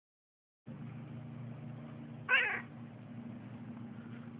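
Domestic tabby cat giving one short, loud meow about halfway through, over a low steady hum; a cat meowing for its supper.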